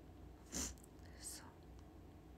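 A young woman's soft whisper or breathy utterance, two short hissy bursts about half a second apart near the middle, over a faint low room hum.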